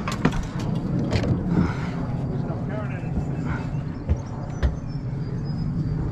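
Steady low hum of a small outboard motor, with scattered sharp clicks and knocks from gear in the aluminium boat and faint, indistinct talk.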